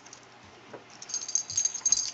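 Pet collar jingling in quick shakes as a pitbull and a kitten tussle, high and metallic and building in the second half. A soft dog whine comes earlier.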